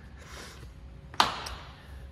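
A single sharp tap a little past a second in, trailed by a brief rustle, over faint room noise.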